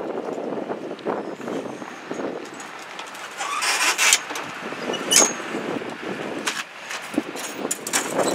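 Handling noise from a folding table with metal legs being pulled out and set up: irregular scraping, rattling and knocks. A louder scrape comes about three and a half seconds in, and a sharp metallic click with a short ring comes just after five seconds.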